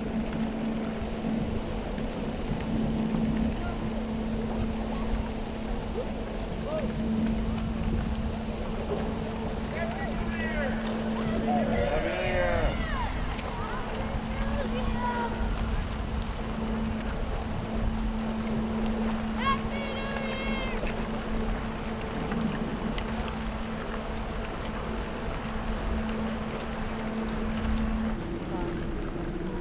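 Great Lakes bulk freighter Mesabi Miner's diesel engines running as she moves through broken ice: a steady, even drone.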